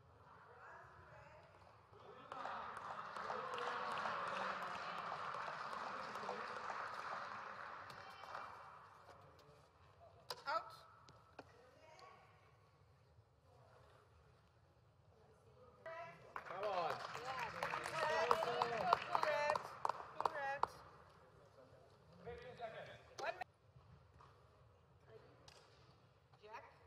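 Indistinct voices and chatter in a large sports hall, in two louder stretches, with a single sharp knock about ten seconds in.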